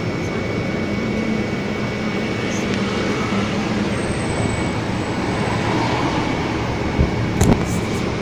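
Steady outdoor street noise, an even rushing hiss like traffic going by, with two sharp clicks about a second before the end.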